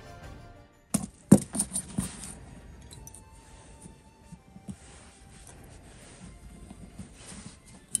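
Background music fading out, then, about a second in, a quick run of sharp clicks and clacks as small sewing tools, a ruler, pen and plastic sewing clips, are handled and set down on a table. Soft fabric handling follows, with a few light ticks and one more sharp click near the end.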